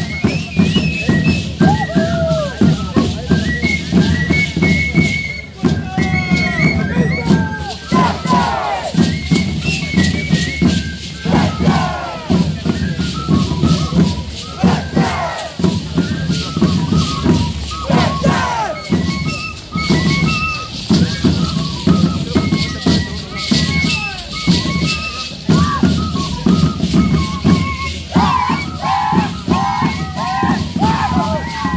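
Live Andean dance music for the Shacshas dance, with the dry rattling of the dancers' shacshas (dried seed-pod rattles tied to their legs) shaking in time with their steps, and voices shouting over it.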